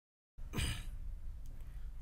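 A man's short breath, heard about half a second in, just before he starts to speak, over a low steady hum.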